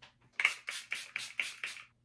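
About seven sharp taps in quick succession, roughly five a second, starting about half a second in.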